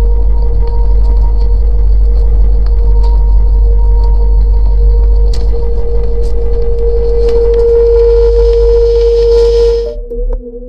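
Electronic music: a heavy, steady sub-bass drone under a sustained mid-pitched tone, with scattered clicks. A hiss swells over the last couple of seconds and cuts off suddenly near the end.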